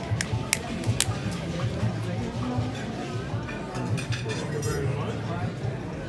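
Cooked lobster shell being cracked and pulled apart by hand, with a few sharp cracks in the first second or so. Background music and diners' chatter run underneath.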